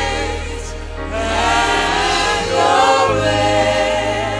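Gospel worship song sung by a choir, with instruments holding low bass notes underneath that shift about three seconds in.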